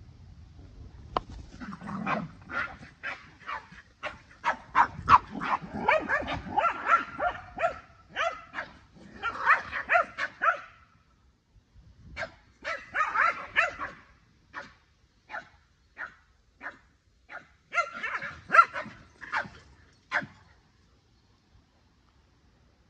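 Dog barking during play, in quick runs of sharp barks about two or three a second. There is a short lull about halfway through, then single barks, then another quick run near the end.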